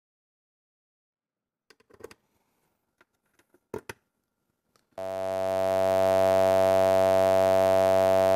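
Eurorack modular synthesizer patched through a Threetom Steve's MS-22 dual filter, an MS-20-inspired filter. After a few faint clicks, a steady held drone with many overtones starts abruptly about five seconds in and keeps an unchanging pitch.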